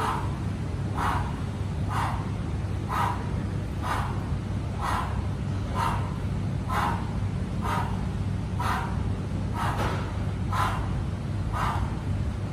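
Short, sharp exhaled breaths, about one a second, in time with kettlebell squat reps, over a steady low ventilation hum.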